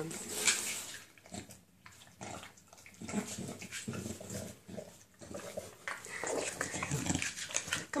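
English bulldog snuffling and snorting noisily as it sniffs and licks at the floor: a string of irregular short snorts and grunts, busiest near the middle and toward the end.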